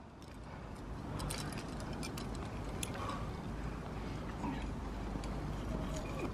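Quiet outdoor ambience: a steady low rumble with a few faint breaths and scattered small clicks.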